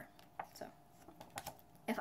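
A handful of faint, sharp clicks and taps scattered across the first second and a half, from a stiff paper coupon card being handled and set down.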